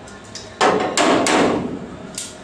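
Hammer blows on the sheet-steel front panels of a Ford Escort shell: one sharp blow about half a second in, then several blows in quick succession a second in that ring out briefly.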